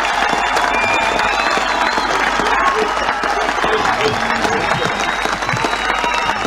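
A large crowd applauding and cheering steadily, many voices shouting over the clapping.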